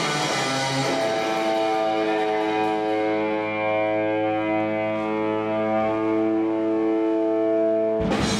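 Live electric guitar solo over a string orchestra: a quick run, then one long sustained note held from about a second in, ringing steadily with rich overtones.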